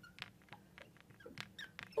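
A marker writing on a glass board: faint, scattered squeaks and taps as the letters are drawn.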